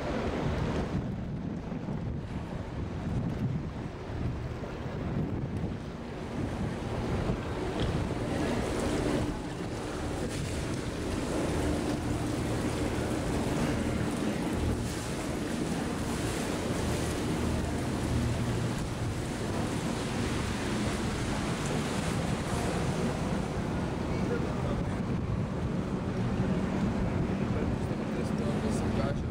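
Open canal tour boat under way: its engine runs steadily with a low hum, with water rushing along the hull and wind buffeting the microphone.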